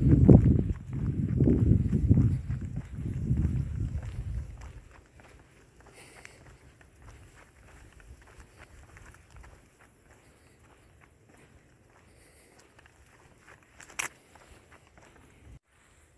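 Wind buffeting the microphone in about three gusts over the first four seconds, then a faint steady outdoor background with light footsteps on the asphalt road. A single sharp click near the end.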